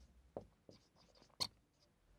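Marker pen writing on a whiteboard: faint scratches and taps of the tip on the board, with one sharper tap a little past halfway.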